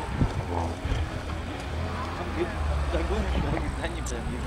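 Off-road vehicle engine running as a steady low rumble, a little louder in the second half, with faint spectator chatter over it.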